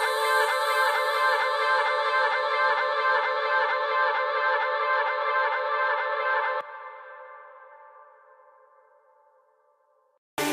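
Trance track playback: layered synth and echoing effects with repeating, sweeping delay patterns, stopping abruptly about two-thirds of the way through and leaving a reverb and delay tail that fades out.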